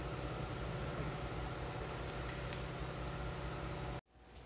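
Steady electrical hum of the high-voltage power supply driving a Lichtenberg wood burn, with a faint hiss over it, until it cuts off abruptly at the end.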